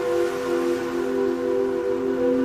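Background music of slow, sustained held notes forming a chord, with one note shifting to a lower pitch about a quarter of a second in.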